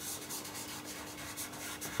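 A fingertip rubbing over fixed pastel on paper, a dry scratchy rub in many short strokes. The rubbing breaks up the fixative's seal on the background so fresh pastel will take.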